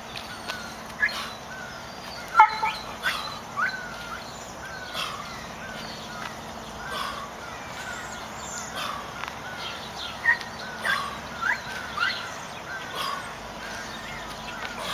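Birds calling repeatedly: short chirps and calls, one every half second to second. A single sharp click about two and a half seconds in is the loudest sound.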